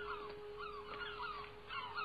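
Seabirds calling, a quick series of short sliding cries about two a second, over a steady held tone.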